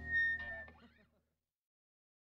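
The last moments of a rock song: the final chord dies away, a short high guitar note rings over a few quick gliding notes, and the sound cuts to silence about a second in.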